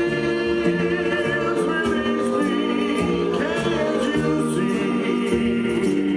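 A live Oberkrainer folk band singing, several voices together in harmony holding long notes, over a stepping bass line.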